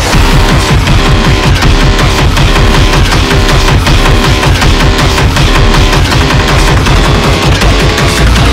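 Loud dubstep track in a heavy drop: a dense electronic bass line of rapid, repeating falling notes over a fast, even drum pattern.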